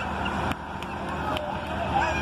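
Hitachi EX200 hydraulic excavator's diesel engine running steadily while its bucket knocks down a brick house, with a few sharp knocks of breaking masonry.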